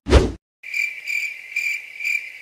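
A short swish, then a cricket chirping steadily at about four chirps a second: the stock crickets sound effect used for an awkward silence.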